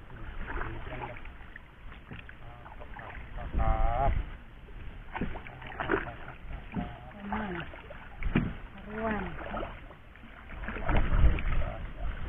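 Cast net being hauled up out of the river beside a small wooden boat, with low knocks from the boat now and then. Voices call out a few times, loudest about four seconds in.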